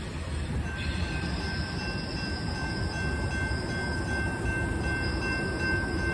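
Norfolk Southern freight train rolling past with a steady low rumble of wheels on rail, joined about a second in by a thin, steady high-pitched squeal of wheels against the rail.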